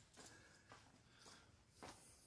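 Near silence: quiet room tone with a couple of faint soft clicks.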